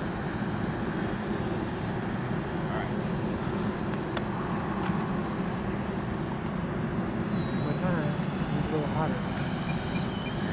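The electric ducted-fan motors of an RC Freewing F-22 jet running in flight, a steady rushing noise with a high whine that shifts up and down in pitch.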